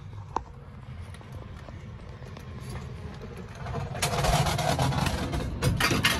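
A steady low rumble, then from about four seconds in, loud irregular rustling noise on the phone's microphone as the phone is handled and swung around.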